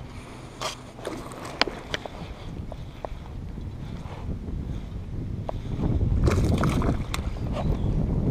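Baitcasting rod and reel being handled while fighting a hooked bass: scattered sharp clicks and ticks over low wind rumble on the microphone, which grows louder near the end.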